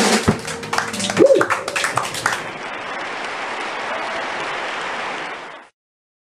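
A live band's song stops and the audience applauds, with a short shout over the first clapping; the applause fades out near the end.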